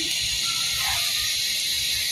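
A steady high hiss, with a few faint, brief animal calls in the background.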